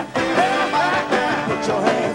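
Live soul band playing with a male lead vocalist singing over it, his voice wavering with vibrato; the music dips briefly right at the start before coming back in full.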